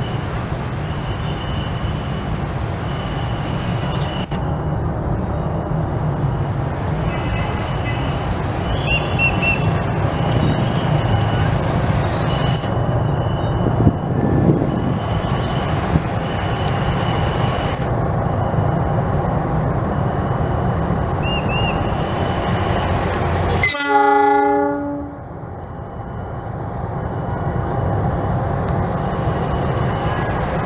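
CC206 diesel-electric locomotive running slowly past with a steady low engine rumble, over a high beeping that repeats about once a second. About three quarters of the way in, the locomotive sounds one short horn blast lasting about a second, the loudest sound here.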